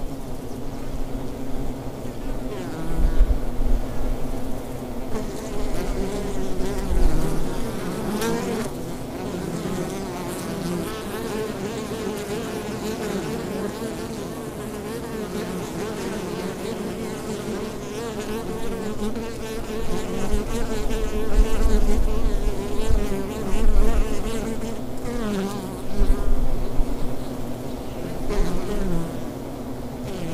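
Honeybees buzzing in flight around their hives: a steady, wavering hum of many bees, with single bees passing close by, their pitch falling as they go, a few times near the end. Occasional low rumbles swell under the buzz.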